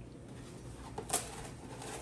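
A box of plastic wrap being picked up and opened, with one brief crinkle about a second in, against quiet kitchen room tone.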